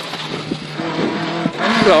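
Rally-prepared rear-wheel-drive Toyota Corolla engine heard from inside the cabin. It runs steadily, then about one and a half seconds in the note steps up in pitch as the driver drops from third to second gear going into a bend.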